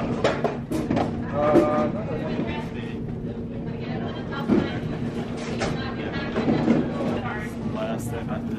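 Airport security checkpoint background: a steady low hum under voices and scattered clatter and knocks.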